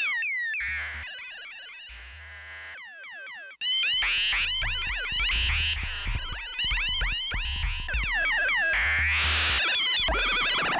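Ciat-Lonbarde Plumbutter analog synth, sampled and processed through Max/MSP, playing rapid rising and falling chirping pitch glides over low pulsing bass notes. The sound thins out and drops away for an instant about three and a half seconds in, then returns at full level with a low beat under the glides.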